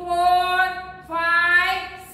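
A woman's high voice singing unaccompanied: two long held notes of about a second each, steady in pitch.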